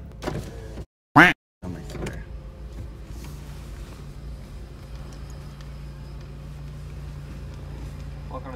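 A car's electric power window running, over the steady low hum of the idling car. About a second in, a brief loud sound cuts in between two short gaps of dead silence.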